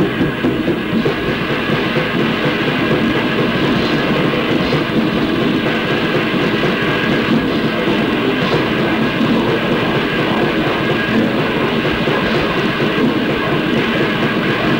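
Lo-fi hardcore punk recording: a band playing fast and loud with distorted guitar, bass and drums in a continuous dense wall of sound, dull and muffled in the top end.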